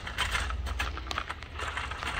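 Plastic shopping cart rolling across a hard store floor, its wheels and basket rattling in quick, irregular clicks over a steady low rumble.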